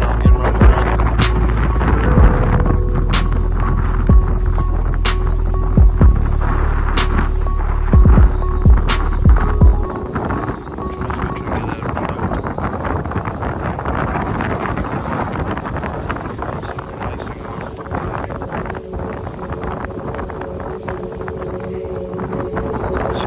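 Strong wind buffeting the microphone, a heavy rumble broken by repeated sharp knocks for about the first ten seconds. It then drops suddenly to a lighter, steadier wind hiss.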